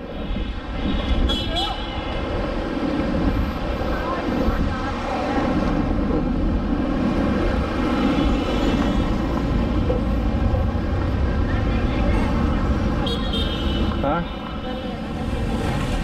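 City street traffic: motorbikes and cars passing in a steady rumble, with faint voices in the background.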